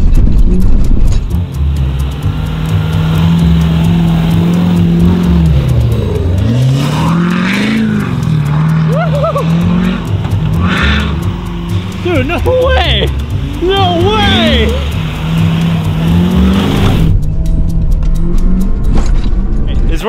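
Ford F-350 pickup's engine running under load as the truck drives through snow on homemade snowmobile tracks, its pitch falling and rising several times with the throttle. Voices call out over it in the middle.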